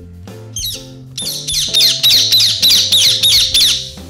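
Parrot screeching sound effect: a quick run of high, falling squawks from about a second in until near the end, over steady background music.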